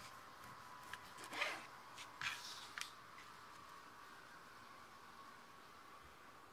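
Kitchen knife slicing through a ripe heirloom tomato on a cutting board: a handful of short, soft cutting and scraping sounds between about one and three seconds in, the loudest about a second and a half in, over a faint steady hum.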